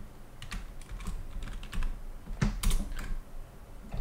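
Computer keyboard keystrokes: a handful of scattered key presses, the loudest two about two and a half seconds in, then a short pause.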